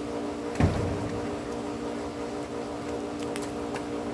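A child's sneakered feet landing once on a concrete driveway with a thump about half a second in, then a couple of light scuffs, over a steady low hum.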